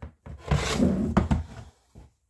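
Hard plastic storage bin scraping and rubbing against another bin as it is pulled out of the stack, a rough scrape of about a second with a knock near its end.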